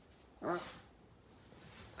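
A man's short, strained 'uh' grunt about half a second in, made with effort while lifting his leg.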